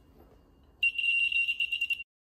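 A loud, high-pitched electronic buzzer tone, like an alarm, starts about a second in, wavers rapidly in level and cuts off suddenly.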